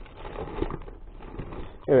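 Hands rummaging through a fabric bag full of cables and electronic parts: irregular rustling of cloth and cables shifting against each other, with small clicks.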